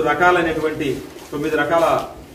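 A man speaking in Telugu.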